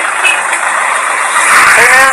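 Road traffic noise: a motor vehicle passing close by, its steady tyre-and-engine rush swelling louder about one and a half seconds in.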